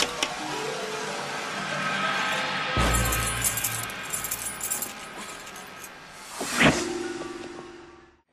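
Tense horror film score, with a sudden hit about three seconds in followed by glass breaking and tinkling, and a sharp stinger near the end before the sound fades out.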